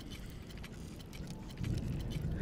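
Steady low background rumble with faint scattered clicks, an ambience sound-effect bed under the dialogue; a soft low swell comes in about one and a half seconds in.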